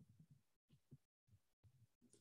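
Near silence: faint room tone with a low rumble that cuts in and out, and a few tiny ticks.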